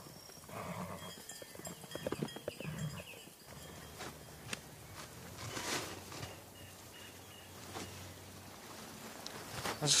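Quiet open-air ambience: faint distant voices in the first few seconds, then scattered soft rustles and footsteps over a low steady hum.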